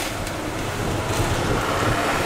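Wind buffeting the microphone with a steady low rumble, over the continuous hiss and rattle of dry kibble pouring from a bag into a wooden feeding box.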